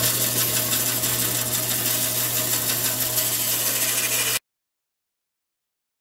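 Woodworking bandsaw running at speed, a steady whir with a low hum. It cuts off suddenly about four seconds in.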